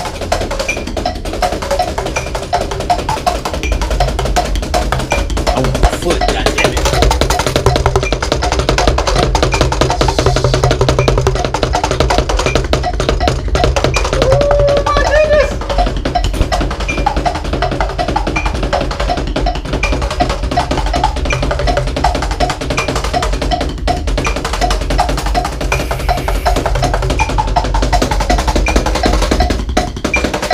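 Drum kit played fast and continuously, dense quick strikes on the drums mixed with cymbals, some of them perforated low-volume cymbals.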